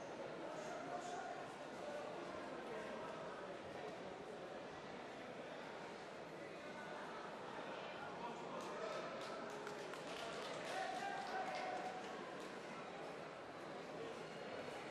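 Ambient noise of a large sports hall during a judo contest: indistinct background voices, with a quick flurry of sharp taps from about eight to twelve seconds in.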